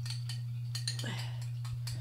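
Metal spoon stirring a thick honey, ginger, cayenne and turmeric paste in a drinking glass, making light, irregular clicks and taps against the glass over a steady low hum.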